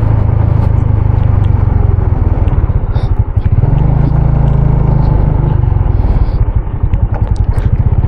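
Motorcycle engine running at riding speed, a low pulsing rumble with road noise over it; the engine note rises about three and a half seconds in and eases back a couple of seconds later.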